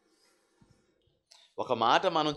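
Near silence with a few faint clicks, then a man's voice starts speaking into a handheld microphone about one and a half seconds in.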